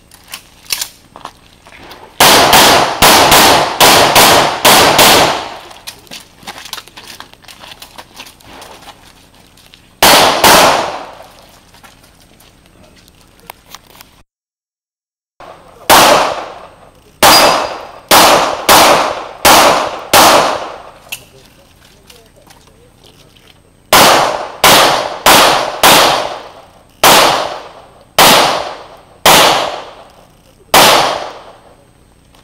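Handgun shots fired rapidly during a practical shooting stage. There is a fast string of about seven shots, then a single shot, then after a brief dropout many more shots, mostly in quick pairs about half a second apart. Each shot is sharp with a short ringing tail.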